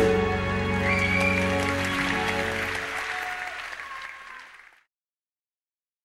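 The closing held chord of a chanson sung by a group of women with accompaniment, under audience applause. The music ends a little under three seconds in, the applause fades away, and the sound cuts to silence about five seconds in.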